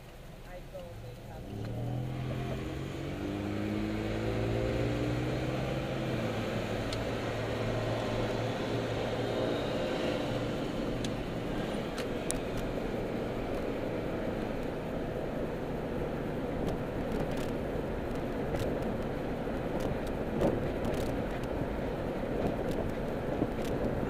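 Car engine, heard from inside the cabin, pulling away from a stop: its pitch rises over a few seconds as it accelerates. Steady engine and road noise follow while cruising.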